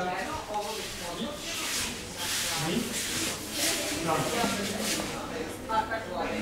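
Low, scattered voices in a large hall, with several short swishes of heavy cotton judo jackets as a group moves its arms.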